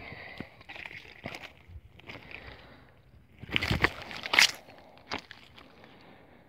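Water sloshing and splashing as a keepnet holding fish is handled in and above the water, with a louder burst of splashing a little past halfway.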